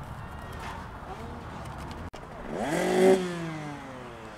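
Low background noise, broken off about two seconds in; then a motocross bike's engine revs up to a loud peak about three seconds in, and its pitch slides down as it eases off.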